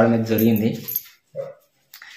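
A single short dog bark about a second and a half in.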